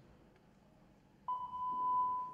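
Quiet arena room tone, then about a second in a single steady electronic beep at one pitch starts abruptly and holds. It is the signal tone that comes just ahead of the routine's music.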